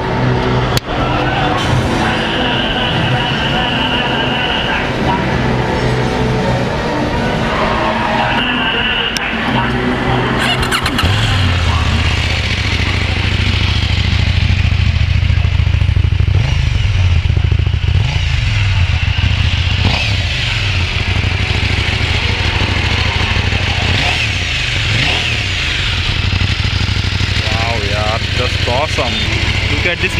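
KTM 790's parallel-twin engine starting up about ten seconds in, then idling with a few brief revs. Before it starts, hall music and crowd noise are heard.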